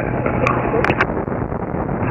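Steady drone of the Adam A500's two centerline-mounted Continental TSIO-550 piston engines and propellers in flight, throttled back to about 20 inches of manifold pressure on the downwind leg. A few short clicks come about half a second to a second in.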